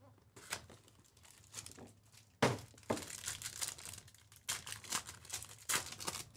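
Cardboard hobby box being opened and a foil trading-card pack crinkling and tearing open. It comes as a series of short rustles, with a sharp rip about two and a half seconds in.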